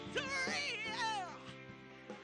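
A woman's voice singing sliding, swooping notes over a clean semi-hollow electric guitar. About a second in the voice falls away in a downward glide, and the guitar chord rings on.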